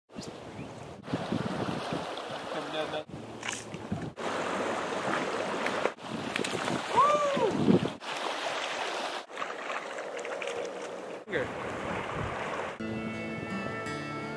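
Flowing river water and wind on the microphone, broken into short pieces by abrupt cuts every second or two, with a short rising-then-falling sound about seven seconds in. Music begins near the end.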